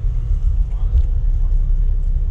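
Wind buffeting the microphone outdoors: a loud, steady low rumble.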